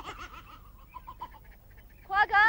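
Faint, brief animal calls: a short wavering call at the start and a few short calls about a second in.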